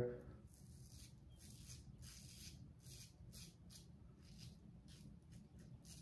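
Faint, quick scraping strokes of a single-edge OneBlade safety razor cutting stubble on a lathered jawline, about two or three strokes a second, as a touch-up pass.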